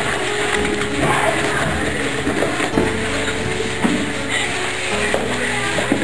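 Background music with held notes that change every second or two.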